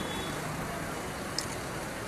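Steady outdoor background noise with a faint low hum and a single small click about one and a half seconds in.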